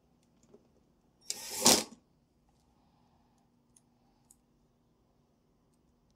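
Milwaukee cordless drill-driver running briefly, under a second, to drive a screw into the mini-split's plastic terminal cover, then a couple of faint clicks.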